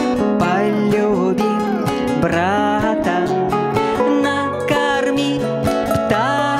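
A woman singing a song to the accompaniment of two acoustic guitars, strummed and plucked.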